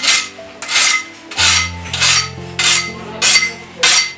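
A large knife blade being sharpened by hand: about seven metal scraping strokes, nearly two a second, evenly paced.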